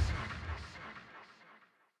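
A deep boom hit at the start, dying away in a long echoing tail with a few faint repeats, fading out to silence a little before the end.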